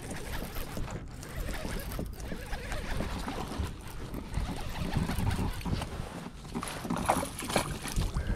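A small hooked bass being reeled up to a kayak and landed, with handling knocks and rustle on the kayak and water splashing at the landing net near the end.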